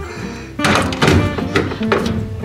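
Background music, with a couple of plastic knocks about half a second and a second in as a handheld emergency lamp is pulled out of its wall bracket and handled.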